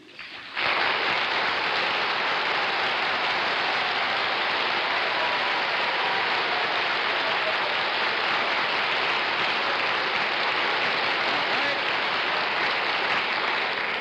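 Studio audience applauding: one long, steady round of clapping that starts about half a second in, greeting the mystery guest's entrance.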